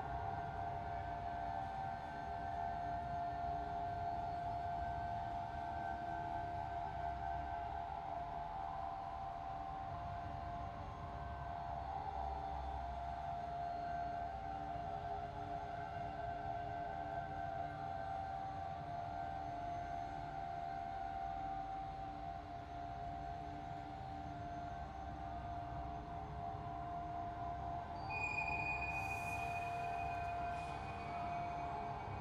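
Spooky ambient soundscape drone: steady, held eerie tones over a low rumble. A higher ringing tone and a short bright sound join near the end.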